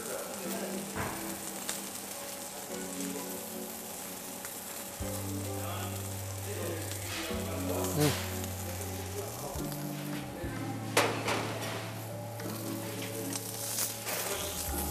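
Food sizzling steadily on a hot chargrill as seasoned potato wedges are laid on the grates, with a few light knocks.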